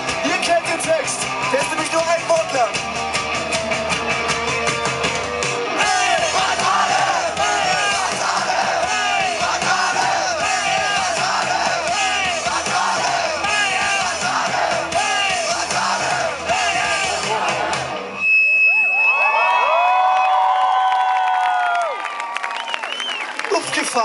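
Rock band playing live through the PA, with the crowd yelling and singing along. About eighteen seconds in, the band stops and long, held cheers and whoops from the crowd follow.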